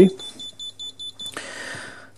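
Buzzer of a RusGuard R-10 EHT reader-controller beeping rapidly, about four short high beeps a second, while the door-open button is held down to switch off open-door mode. The beeps stop about two-thirds of the way in and give way to a short rustling noise.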